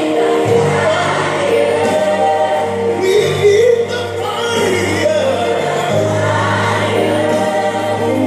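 Gospel music with choir singing, loud and steady, with a strong bass line that comes in about half a second in.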